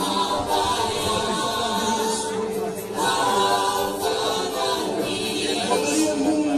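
Unaccompanied choir singing, several voices holding long notes together.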